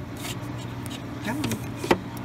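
Metal freeze-dryer tray clicking against the shelf rack as it is handled, a sharp click near the end, over a steady low hum.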